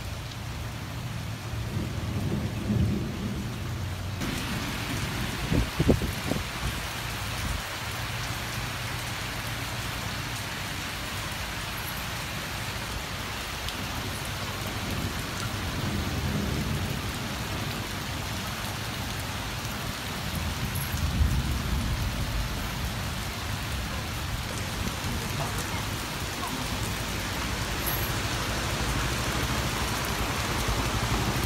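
Heavy rain falling on flooded pavement and standing water, a steady hiss that grows stronger about four seconds in. A few low rumbles come and go under it.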